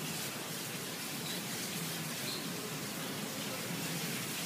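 Steady background hiss of room noise, with no distinct event.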